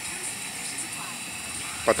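Electric heat gun running steadily, a continuous fan whir and hiss, while it warms a dented plastic car bumper to soften it for reshaping.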